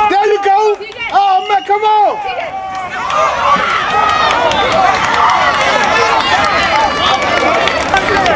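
Football spectators yelling during a play: one voice shouts in a string of drawn-out calls for the first couple of seconds, then many voices yell and cheer over each other.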